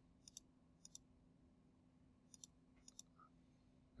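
Quiet computer mouse clicks: four clicks, each heard as a quick pair of ticks, two about half a second in and near the end of the first second, two more between two and three seconds in, over a faint steady low hum.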